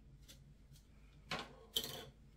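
Two short rustling, scraping noises about half a second apart, the second louder, from fingers working through the synthetic fibres of a curly wig.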